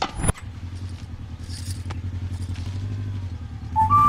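A low, steady rumbling hum that grows slowly louder, after a short laugh at the very start. Near the end, flute music comes in on top with a held note.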